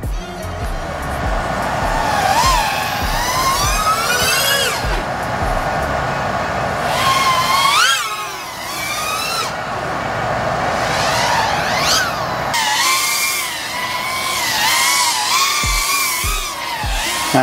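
High-pitched whine of a 3.5-inch FPV quadcopter's brushless motors (FlyFishRC Flash 1804, 3500KV), its pitch rising and falling again and again with the throttle. Background music with a steady beat plays under it.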